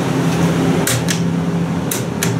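Steady low hum of a hydraulic elevator's machinery, with a few sharp clicks about a second in and near the end.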